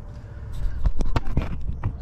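Handling noise: a run of sharp clicks and knocks from about half a second in to near the end, as the camera and the filled hand fluid pump are moved into place under the car, over a low steady rumble.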